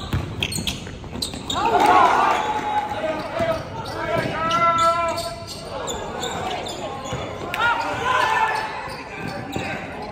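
Basketball game in a gym: a ball bouncing on the hardwood floor as it is dribbled, with sneakers squeaking and indistinct voices calling out across the hall.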